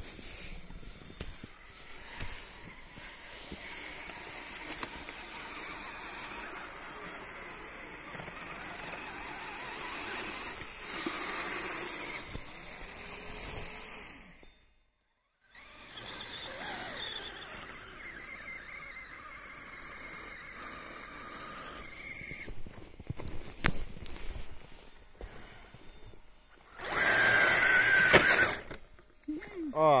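Small electric RC vehicles crawling through deep snow: a steady motor whir with the churn of tracks and tyres in snow. The sound breaks off for about a second midway. Near the end a tracked RC snow vehicle runs much louder for about two seconds, its motor whining under load as it churns snow.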